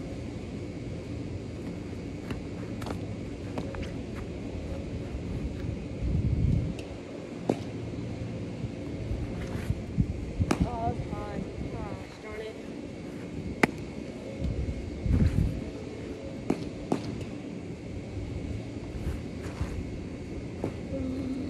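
Outdoor yard ambience with wind buffeting the microphone in two low gusts, broken by a handful of sharp single pops of a baseball smacking into a leather glove.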